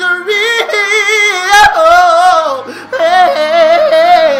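A man singing gospel solo, loud: drawn-out runs with no clear words, heavy vibrato on the held notes, and a long note sliding downward near the end.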